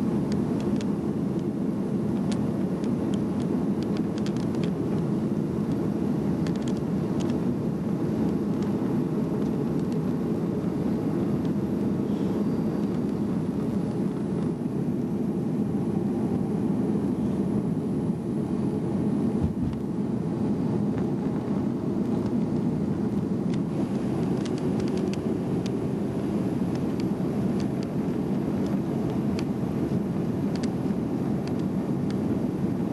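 Steady airliner cabin noise from inside the plane on its approach to land: a constant low rumble of engines and airflow, with a few faint clicks.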